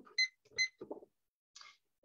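Two short, high electronic beeps about half a second apart, followed by faint small sounds and a brief soft hiss.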